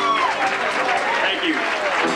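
Live audience applauding, with voices calling out, in a break in the music after a song.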